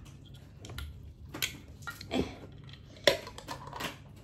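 Clicks and knocks of a peanut butter jar being opened by hand: the screw lid twisted off, then a metal spoon handled against the jar. A few scattered sharp clicks, the loudest about three seconds in.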